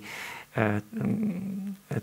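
A man's voice hesitating mid-sentence: a short voiced sound, then a drawn-out, low, steady hesitation sound while he searches for the next word.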